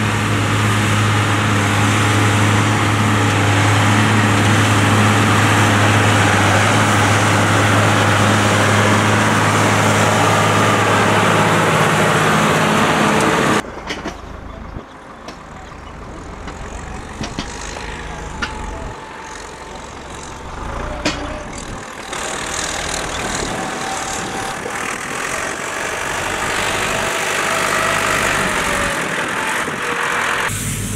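New Holland TM125 tractor engine running loud and steady under load as it pulls a McHale round baler through the silage swath. About halfway through, it cuts off abruptly to a quieter tractor engine, with a few knocks, as a second tractor carries wrapped bales.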